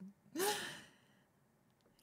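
A person's breathy sigh, its pitch rising and then falling, lasting about half a second near the start.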